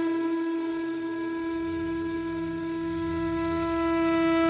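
A flute holding one long, steady note, with a faint low drone coming in underneath about halfway through.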